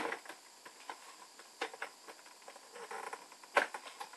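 Hands working at a cardboard advent calendar compartment to get the item out: scattered small clicks and rustles, with one sharper click a little before the end.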